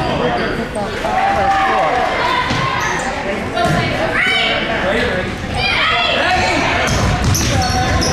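A basketball bouncing on a hardwood gym floor amid unclear chatter from players and spectators, echoing in a large gym.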